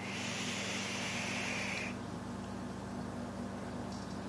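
A drag on a Dark Horse clone rebuildable dripping atomizer with its airflow wide open: a steady hiss of drawn air and firing coil for about two seconds, then it stops.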